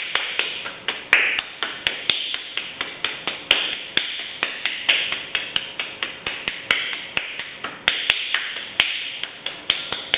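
Hands patting a lump of moist pugged clay into a ball: a steady run of short, sharp slaps, about four a second.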